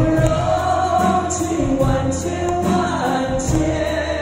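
A male singer sings a slow melody through a PA, holding long notes, backed by a live band of drum kit, electric guitars and keyboard, with regular cymbal strikes.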